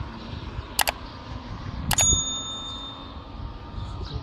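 Three quick double mouse-clicks about a second apart, the last followed two seconds in by a bright bell ding that rings for about a second: a subscribe-button animation's click-and-bell sound effect. Faint steady background noise runs underneath.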